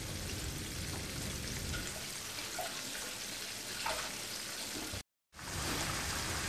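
Flour-coated chicken drumsticks shallow-frying in rapeseed oil in a frying pan, with a steady sizzle and faint crackle. The sound breaks off for a moment about five seconds in, then the sizzling carries on.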